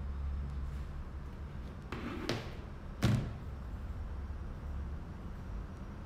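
A smartphone set down on a wooden tabletop: a brief handling scrape, then one sharp knock about three seconds in.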